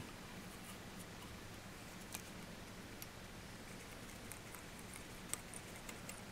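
Quiet room with a faint steady hum and a few faint ticks of fly-tying tools and materials being handled at the vise.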